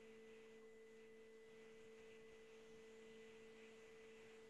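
Near silence: a faint steady hum with no other sound.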